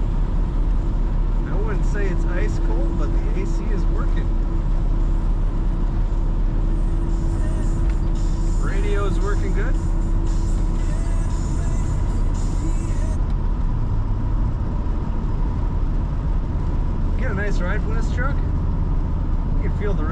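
Cab noise of a 1984 Dodge D150 pickup driving at road speed: a steady low rumble of engine, drivetrain and tyres. A hiss comes in about seven seconds in and stops about thirteen seconds in.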